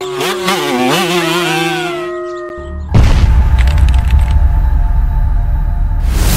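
An intro sound effect: a wolf howl, its pitch wavering and then settling into a held note over a steady tone. About three seconds in, a much louder deep rumble with music takes over.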